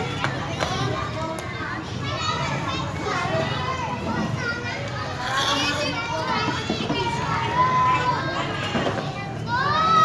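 Children's voices chattering and calling out as they play, with a long held call in the second half and a high rising shout near the end.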